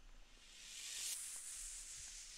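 Faint white-noise sweep effect from a beat's effects track, swelling in over about the first second and then holding as a high hiss.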